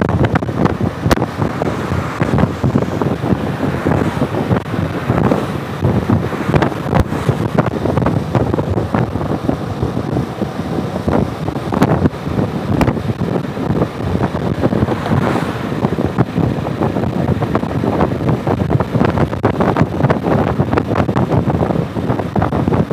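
Wind buffeting the microphone of a Piaggio MP3 three-wheeled scooter at road speed, over its engine and tyre noise; the rumble gusts and crackles steadily.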